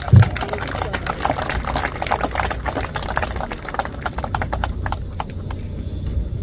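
Applause from a small crowd, with a low thump right at the start. The clapping thins out near the end.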